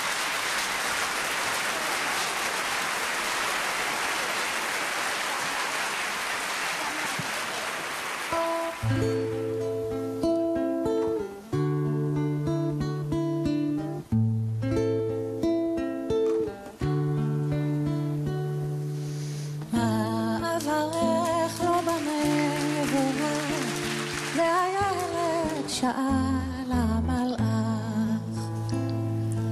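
Audience applauding for about eight seconds, then a nylon-string classical guitar starts a picked introduction with bass notes. A woman's singing voice comes in over the guitar about twenty seconds in.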